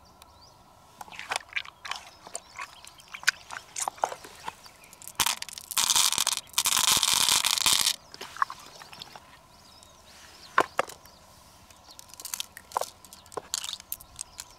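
A handful of small beads poured into an open mussel shell, making a dense rattling clatter for about two seconds in the middle. Before and after it there are scattered light clicks from the beads and shells being handled.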